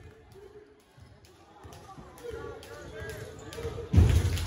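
Basketball being dribbled on a hardwood gym floor, with spectators' voices that grow louder in the second half.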